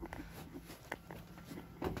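Faint handling and movement noise: a few light clicks and rustles as a handheld camera is swung round, with a low steady hum underneath.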